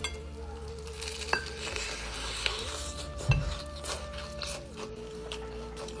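Faint crunching and chewing of crispy glazed fried chicken, with a few sharp crackles from the breading.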